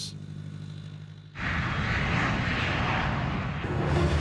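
Jet airliner engine noise: a low steady hum, then a loud, steady rushing noise that starts suddenly about a second and a half in.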